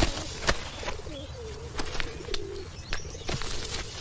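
Laundry being handled and slapped by hand in a washtub, with scattered sharp slaps. A low wavering cooing sound runs through the first half.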